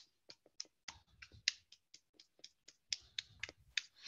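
Faint, scattered applause coming through a video call as isolated sharp claps, a few a second at irregular intervals.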